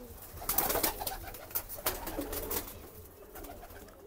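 Domestic pigeons cooing softly, with a few sharp clicks scattered through the first half.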